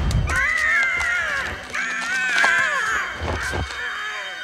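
Cartoon raven eagle screeching: two long, harsh, wavering cries, each just over a second, followed by a few short knocks near the end.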